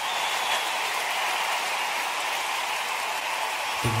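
A steady hissing noise with no pitch or beat.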